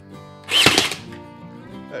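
A brad nail gun fires once about half a second in, driving a two-inch brad through plywood siding into the wall, a single sharp shot. Background music plays throughout.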